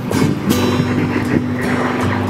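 Acoustic guitar music, plucked notes over a held low note.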